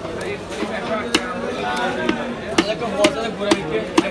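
A knife chopping through a rohu fish fillet onto a wooden chopping block: five sharp strikes, one about a second in, then about every half second towards the end.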